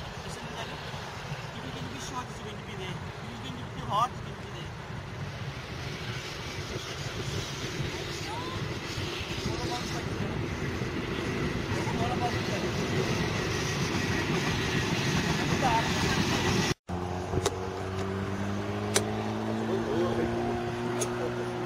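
Steady low rumble of road traffic, with faint distant voices. After a sudden cut near the end, a steady low engine hum comes in, with one sharp click.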